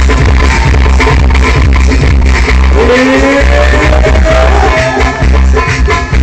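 Loud live Syrian dabke-style electronic music played through a concert PA, with a heavy, steady bass beat. About halfway through, a long lead note slides up and holds for about two seconds.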